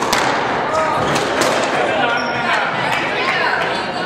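A squash ball struck by rackets and smacking off the court walls in a rally, a quick run of sharp, echoing hits that ends after about two and a half seconds.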